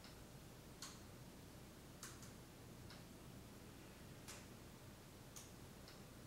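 Near silence: quiet room tone with about eight faint, sharp clicks at uneven intervals, roughly one a second.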